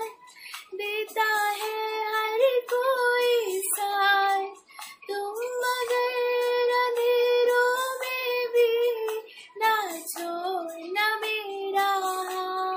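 A woman singing solo and unaccompanied, in phrases with short pauses for breath between them, holding one long note through the middle.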